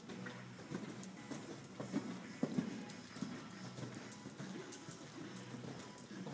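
Hoofbeats of a horse cantering on soft dirt arena footing, dull repeated thuds, loudest about two seconds in.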